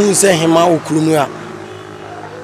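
A man speaking into a handheld microphone for about the first second and a half, then a short pause with a faint steady hum underneath.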